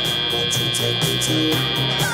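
Competition field's electronic signal tone: one long, steady, high-pitched tone that stops at the end, marking the change from the autonomous to the driver-controlled period. Arena music with a pulsing bass line plays underneath.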